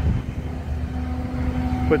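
Steady low rumble of an idling engine, with a faint steady hum over it.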